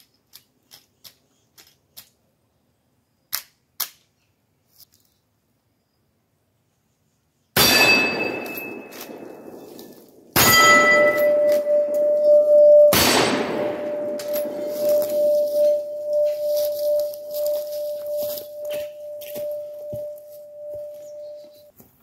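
Three .30-30 shots from a Rossi R95 lever-action rifle, the first about eight seconds in and the rest roughly two and a half seconds apart, each followed by steel targets ringing. One steel plate keeps ringing with a steady tone for about ten seconds after the second shot. A few faint clicks come before the first shot.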